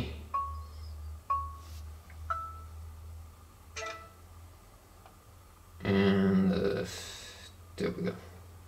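Four short, clear pings, each fading quickly, come about a second apart. Then, a little before six seconds in, a man's voice gives a brief hum or murmur without words, with a short sound just before the end.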